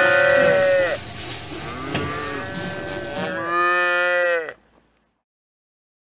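Young dairy calves bawling: a long call at the start, a quieter one about two seconds in, and another long call near the fourth second.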